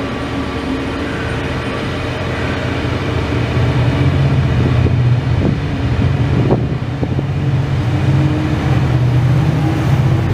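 Israel Railways passenger coaches rolling past close by: a steady low rumble of wheels on rails that grows louder about four seconds in, with a couple of brief clicks near the middle.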